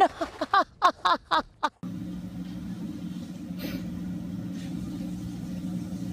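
A person laughing in a string of short bursts, cut off suddenly after about two seconds. A steady low hum follows, with no voices.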